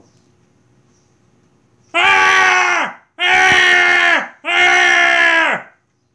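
A man screaming three times in a high Pee-wee Herman voice, in mock fright. Each scream lasts about a second and falls in pitch at its end; the first starts about two seconds in.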